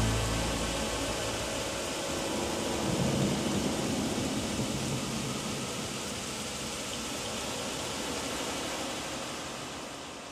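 A dense wash of noise in an ambient electronic drone track, after its low sustained notes die away in the first second; the noise swells about three seconds in, then fades out near the end.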